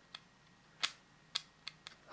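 A handful of light, sharp clicks and taps of fingers and nails on the plastic casing of an Ericsson T10 mobile phone as it is handled at its open battery compartment. The clicks are scattered and faint, with the clearest a little under a second in.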